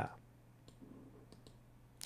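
Very quiet pause with a low steady hum and a few faint, short clicks near the middle.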